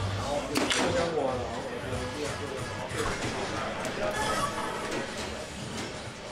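Background music and voices, with the electronic game sound effects of a soft-tip darts machine as a dart scores, sharpest about half a second in.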